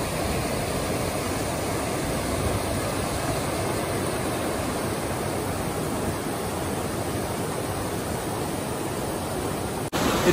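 A fast mountain creek rushing over rocks: a steady, unbroken rush of white water.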